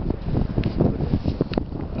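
Wind buffeting the camera's microphone: a rough, uneven low rumble with a couple of sharp clicks.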